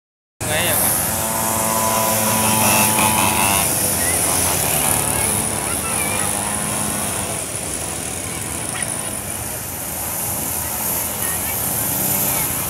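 Small engines of several children's mini trail bikes running and revving as they ride around, with a steady engine note strongest in the first few seconds. Voices are mixed in behind.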